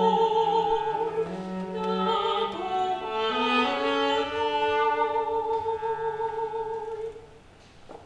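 Soprano singing long held notes with vibrato, over a low bowed cello line. A long note ends about seven seconds in, followed by a short quieter pause.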